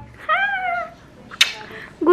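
An infant's short high-pitched squeal: one arched, meow-like call of about half a second, followed by a single sharp click about a second later.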